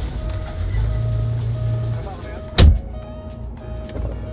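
Porsche 911 engine idling, heard from inside the cabin, a steady low rumble, with one sharp thump about two and a half seconds in.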